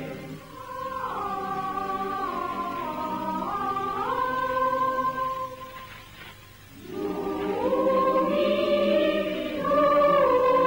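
Choral music on the film soundtrack: a choir holding long chords that change in steps. It fades briefly about six seconds in, then swells back, louder.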